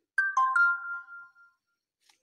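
Electronic chime, like a phone notification tone: three quick ringing notes struck one after another, which ring on briefly and fade out within about a second.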